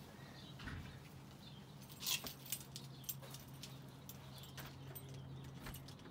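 Keys on a string being handled and fitted into a front-door lock, a scatter of short metallic clicks and jingles, over a steady low hum.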